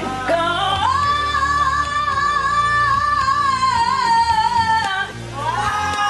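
A woman singing live into a microphone, belting one long, high held note with vibrato for about four seconds, which sags slightly before it breaks off near five seconds. A new phrase starts rising just before the end.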